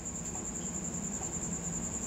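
A steady, high-pitched, finely pulsing trill over a low hum, with a few faint ticks from a pen writing on paper.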